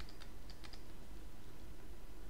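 Light clicks and taps of a stylus on a tablet as it writes, several in the first second, over a faint steady background hum.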